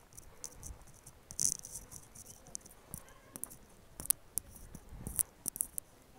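Scattered sharp clicks and a brief rustle, irregularly spaced: handling noise from a phone camera carried while walking.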